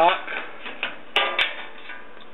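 Two sharp clicks a little over a second in, about a quarter of a second apart, the first with a brief ringing tone.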